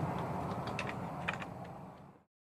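A few light clicks and clinks of metal as the old, rusted brake booster is turned over in the hands, over a low steady background hum that fades out near the end.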